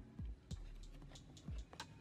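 Faint, irregular small clicks and ticks from a crochet hook and fingernails working a single crochet stitch in yarn.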